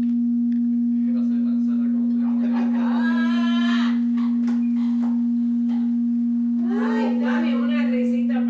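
A loud, steady electronic hum at one fixed pitch on the audio track, with a fainter overtone above it. Faint voices of people in the room come through underneath it around the middle and again near the end.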